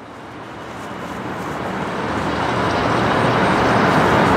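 A rushing noise that swells steadily louder.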